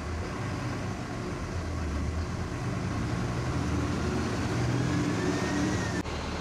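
Bharat Benz sleeper bus engine heard from the driver's cabin, pulling away and gaining speed: a low rumble that slowly grows louder, with a faint whine rising in pitch over the second half.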